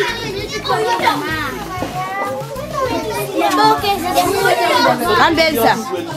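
A group of children talking and calling out at once, many high voices overlapping.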